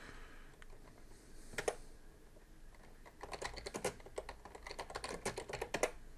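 Typing on a computer keyboard: a keystroke about a second and a half in, then a quick run of keystrokes through the second half.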